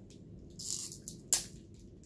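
A hard, sticky nougat bar being bitten while still in its plastic wrapper: a brief rustle of the wrapper, then one sharp crack just over a second in.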